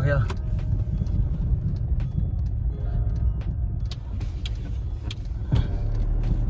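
Car driving slowly, heard from inside the cabin: a steady low rumble of engine and tyres.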